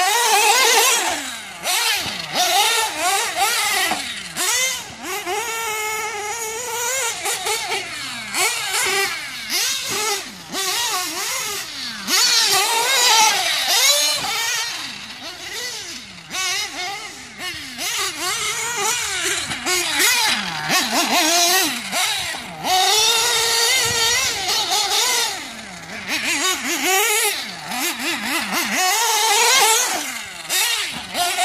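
Reds R5T nitro engine in a 1/8-scale Losi 8ight-T 3.0 truggy, revving up and down over and over, its pitch rising and falling every second or two. The owner calls the tune still rich but with lots of smooth power.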